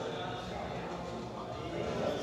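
Indistinct men's voices chattering in the background, with no clear words and no ball strikes.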